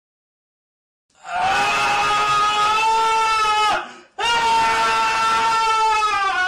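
A person screaming twice, two long high-pitched held screams starting about a second in with a short break between them; the second one slides down in pitch at its end.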